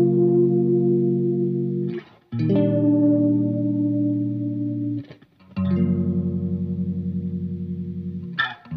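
Instrumental song intro: slow guitar chords, each struck and left to ring for a few seconds, with a short break before the next chord about every three seconds.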